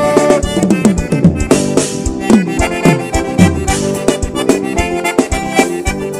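Live band playing an instrumental passage led by accordion, over a steady drum beat and bass.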